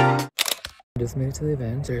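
Background music cuts off, followed by a short camera-shutter click effect of two or three quick clicks about half a second in. A man's voice starts after a brief gap.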